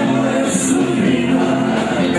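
Several men singing a Serbian folk song together over instrumental backing, holding long notes.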